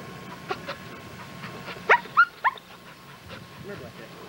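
A dog giving short, high-pitched yelps: two faint ones about half a second in, then three louder, quick ones around two seconds in.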